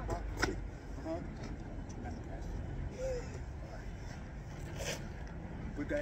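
Steady low outdoor background rumble with a few brief, soft voice sounds and two short knocks, one about half a second in and one near the end.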